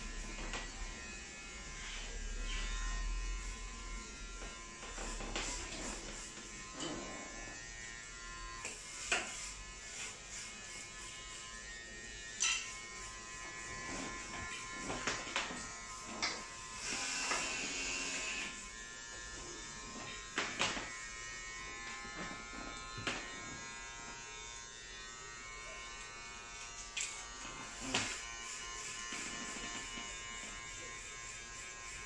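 A small electric motor buzzing steadily, with scattered sharp clicks and knocks.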